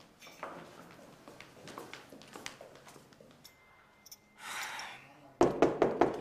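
Light footsteps on a hard floor, a short hiss, then in the last second a quick run of loud knocks on a wooden room door.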